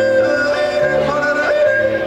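A zither playing a tune with a man's voice yodeling over it, the voice flipping upward in pitch several times.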